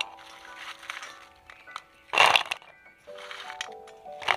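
Background music with long held notes. About two seconds in, a short, loud rustling clatter as a handful of crisp fried rice kurkure sticks is dropped by hand onto a plate.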